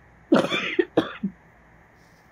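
A woman coughing twice in quick succession, the second cough shorter.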